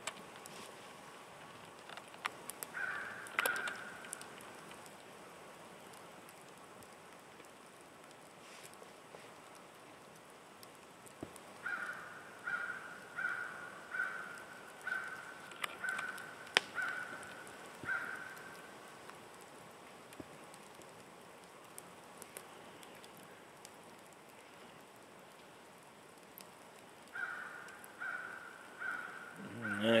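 A crow cawing in bouts of short, evenly spaced caws: two about three seconds in, a run of about eight from about twelve to eighteen seconds, and four more near the end.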